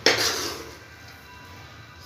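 A steel spoon clattering and scraping against the inside of a steel kadai while halwa is scooped out: one loud burst right at the start that dies away within about half a second.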